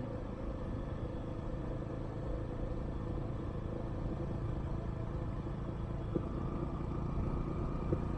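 A vehicle driving slowly along an unpaved gravel road: a steady low engine rumble with tyre and road noise, unchanging throughout.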